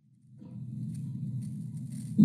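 A home video's soundtrack fading in out of silence shortly after the start: steady, low-pitched background room noise with no distinct events.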